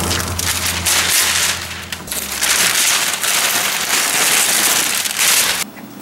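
Brown masking paper and blue painter's tape being pulled off a car door by hand, crackling and rustling, stopping shortly before the end.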